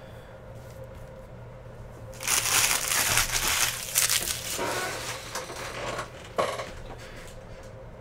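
Empty foil trading-card pack wrappers crinkling as a hand gathers them up, for about four seconds from a couple of seconds in, ending with a sharp tap.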